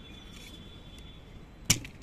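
A single sharp click or knock near the end, over faint outdoor background.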